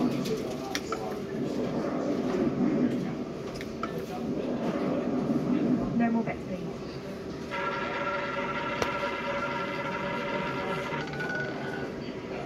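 Indistinct voices and a few clicks, then about halfway through an electronic roulette terminal gives out a steady chord of several held electronic tones for about three seconds, followed by a single softer tone, as the spin starts.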